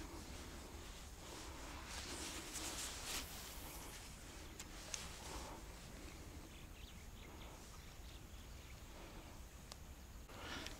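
Faint outdoor ambience with soft rustling from movement and handling on a grassy bank, a little stronger two to three seconds in, and a few light clicks around the middle.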